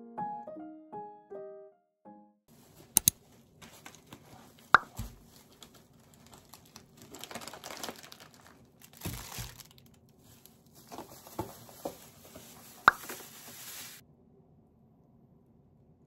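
Piano music ending about two seconds in, then a canvas tote bag and plastic-wrapped groceries rustling and crinkling as they are unpacked onto a kitchen counter, with a few sharp knocks as items are set down.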